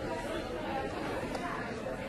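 Indistinct background chatter of several people talking at once, a steady murmur with no single voice standing out.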